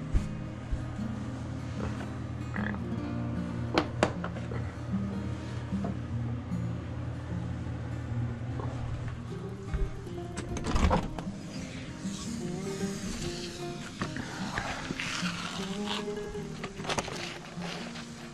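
Background music, with a few brief knocks about four seconds in and again near the middle.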